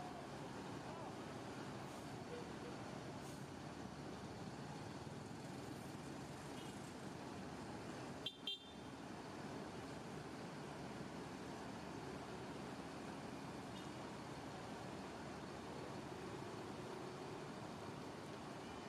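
Diesel engine of a Mercedes-Benz intercity coach running steadily as the bus manoeuvres slowly across a bus terminal yard, with general traffic noise around it. A brief high toot comes about eight seconds in.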